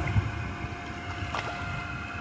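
Water splashing and sloshing in a small inflatable paddling pool as children move about in it, with wind rumbling on the microphone.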